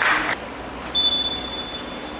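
Referee's whistle blown once, a shrill steady blast of about a second starting about a second in. A brief burst of noise comes at the very start.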